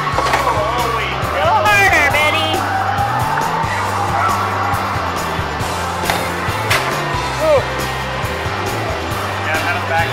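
Hard balls rolling up an arcade alley-roller lane with a rumble and knocking against the scoring rings, a few sharp knocks standing out, over loud arcade music and electronic game sounds.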